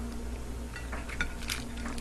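Faint clicks and crackles of a lobster tail's cut shell being pried apart by hand, over a steady low hum.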